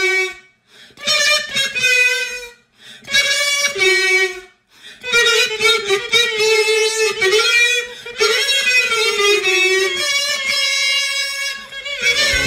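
Four plastic kazoos played together as a small ensemble, buzzing through a tune in short phrases. There are brief breaks between the phrases in the first few seconds, then one longer unbroken phrase.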